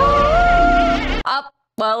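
Film sound effect of a sci-fi energy beam: an electronic whine that rises in pitch and then holds over a low rumble, cutting off after about a second.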